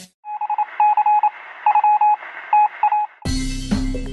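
Telephone-style beep tones over a thin, phone-line-like hiss, coming in short stuttering groups. About three seconds in they give way to intro music with a strong beat.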